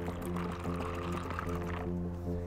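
Background music with held notes, over which liquid pours from a plastic pitcher into a plastic cup, from shortly after the start until near the end.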